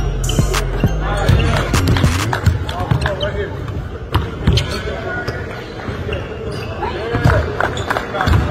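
Basketballs bouncing on a hardwood gym court, a run of irregular thuds, over voices and music.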